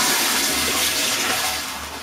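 Bath water splashing and sloshing as a plastic toy boat is pushed down into it, an even rushing noise that fades away over about two seconds.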